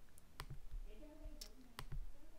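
A few sharp computer mouse clicks, about four spread over two seconds, as cells are selected and a dialog is confirmed.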